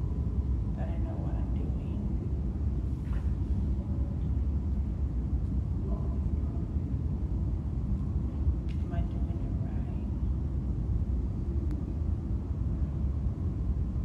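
A steady low rumble of room noise in a large function room, with faint murmured voices now and then.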